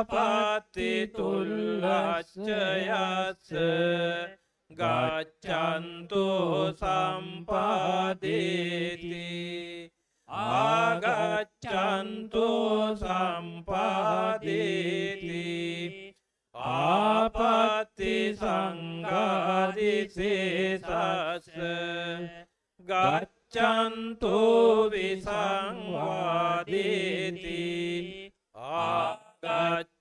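Buddhist monks' Pali chanting of Tipitaka scripture, a steady recitation tone on a near-constant pitch. It runs in phrases of five to six seconds with short breath pauses between them.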